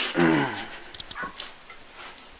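A short vocal cry that falls steeply in pitch over about half a second, followed by a few faint clicks.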